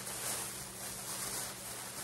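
Steady background hiss with a faint low hum and no distinct events: room tone.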